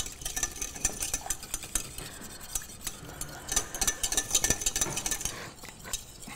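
Metal utensil stirring hot liquid in a small stainless steel saucepan, clinking and scraping against the pan in quick, irregular strokes as the gelatin dissolves.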